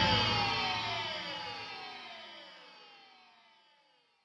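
The final chord of a heavy metal track ringing out, sliding slowly down in pitch as it fades away over about three seconds.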